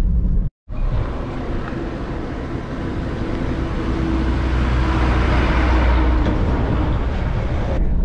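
A single-decker bus coming along the road toward the listener, its engine and tyre noise steadily growing louder and loudest near the end as it draws close.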